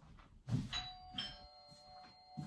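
A thump about half a second in, then a two-note chime: a first tone, a second higher tone joining about half a second later, both ringing on steadily.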